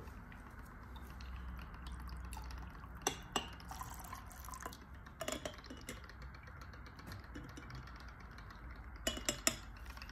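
Liquid trickling and dripping from an upturned glass jar into a glass beaker as the jar is rinsed out, with a few light glass clinks about three and five seconds in and again near the end.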